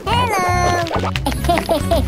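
Upbeat background music with a steady beat, overlaid with a cartoonish squeaky voice effect. It gives a falling squeal near the start, then quick short repeated 'oh' calls about four a second.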